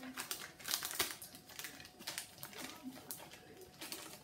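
Thin plastic food packaging, a clear film and plastic tray, crinkling as it is handled and pulled open, in quick irregular crackles.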